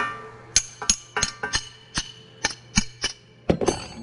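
Steel combination wrench working the nut on a dowel puller's collet: about ten sharp, irregular metallic clicks and knocks, several ringing briefly, with a closer cluster near the end.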